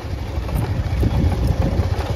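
Motorcycle engine running steadily at low speed on a gravel dirt track, its sound heavy and low-pitched with no change in revs.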